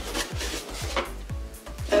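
Cardboard subscription box being handled and moved: irregular rubbing, scraping and light knocks of the box against hands and table. A steady beat of background music runs underneath.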